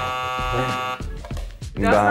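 A quiz buzzer sound effect: one steady, buzzy tone lasting about a second that cuts off suddenly.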